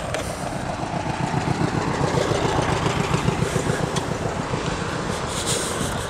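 Street traffic: a car passing close by with engine and tyre noise, a low rumble that swells and then eases off a little.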